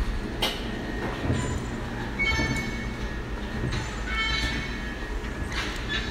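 A steady low rumble, with two brief high-pitched squeaks about two and four seconds in.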